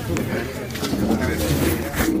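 Indistinct chatter of several people talking at once in a lecture room, with a few small knocks and clicks of movement.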